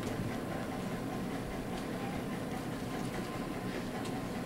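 Steady low room noise with a faint constant hum underneath, unchanging throughout.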